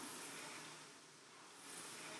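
Faint whoosh of a Concept2 rowing machine's fan flywheel spinning, fading off and then swelling again near the end as the next stroke drives it.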